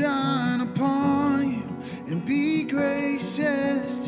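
A man singing a worship song, accompanying himself on acoustic guitar, with sung phrases that pause briefly between lines.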